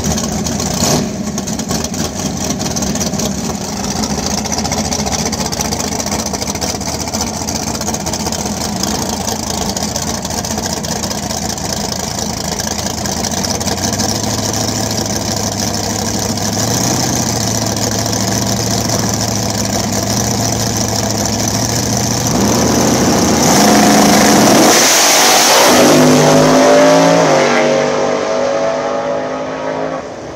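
Nitrous Fox-body Mustang drag car's engine running steadily in the lane, then going to full throttle about 23 seconds in, its pitch climbing in steps through the gear changes as it pulls away down the track and fades near the end.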